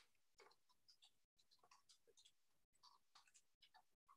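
Near silence: faint, irregular small clicks and ticks, broken by brief dropouts to dead silence.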